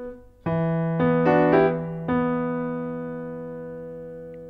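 Piano playing a short phrase of a riff in E minor, one hand at a time: a low note about half a second in, a few quick higher notes just after, then a new chord about two seconds in, held and left to die away.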